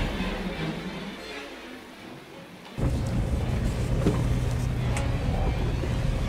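Background music fading out, then about three seconds in a sudden steady low hum of the sailboat's inboard engine running at low revs during a docking manoeuvre.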